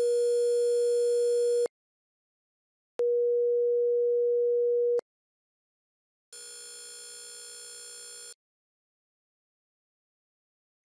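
Three synthetic test tones play in turn, each about two seconds long with silence between. First comes a 480 Hz sine wave reduced to 3 bits, a harsh, buzzy tone full of overtones. Next is the clean 24-bit 480 Hz sine, a pure steady tone. Last, and much quieter, is the quantization noise alone, the error left by the 3-bit rounding, heard as a thin buzz.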